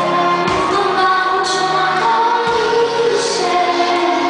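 A young girl singing a pop song live into a microphone, holding long notes over a backing band of drums, electric guitar and keyboard.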